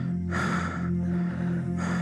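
A man gasping for breath twice, one breath about half a second in and another near the end, over a steady low music drone.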